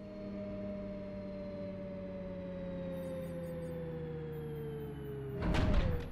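A steady electronic hum, like a machine winding down, slowly falling in pitch, cut off about five and a half seconds in by a short loud whoosh.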